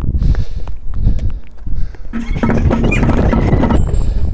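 Footsteps on stone steps with wind rumbling on the microphone. From about two seconds in, hand drums are beaten rapidly under a steady held tone.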